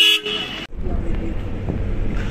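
A vehicle horn sounds in one short, steady blast, cut off suddenly, followed by the low, steady rumble of a car's engine and tyres heard from inside the moving car's cabin.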